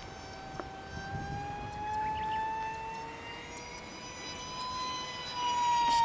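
FunJet RC plane's electric motor and 6.5×5.5 propeller whining in flight, one steady high-pitched tone whose pitch rises slowly and then starts to fall near the end as the plane passes.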